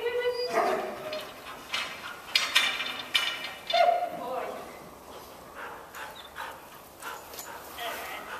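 A dog barking in short, irregular bursts while running, mixed with a woman's brief called commands.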